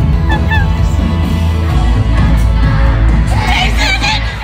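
Loud live pop concert music with heavy, steady bass, heard from within the crowd. Near the end, voices close by rise over it, singing or shouting along.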